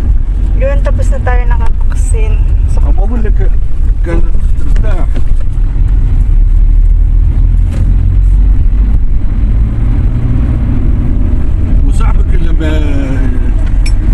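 Steady low rumble of a car riding on the road, heard from inside the cabin, with people talking at times over it.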